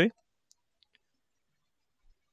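Three faint computer-mouse clicks, the first about half a second in and two close together just before the one-second mark.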